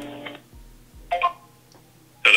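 Telephone hold music heard through a phone line: a plucked guitar chord fading out in the first half second, then a brief higher note about a second in.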